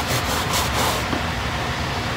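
A Mr. Clean Magic Eraser scrubbing a white Nike Air Force 1 sneaker: steady rubbing, in quick strokes during the first second, then softer.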